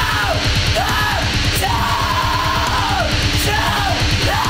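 Loud, heavy punk-metal rock song: fast, dense drumming under a yelled vocal that holds long, arching notes.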